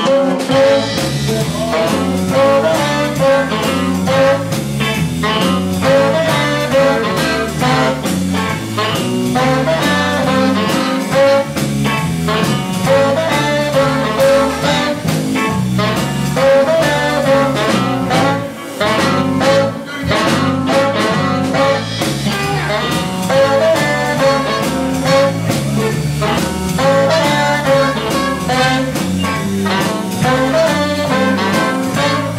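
A small jazz band playing live: trumpet and saxophone play the melody together over strummed guitars and drums, with a steady beat.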